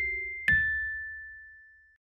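Chime notes of a logo jingle. A note struck just before rings on, and a last, louder ding about half a second in rings out and slowly fades away.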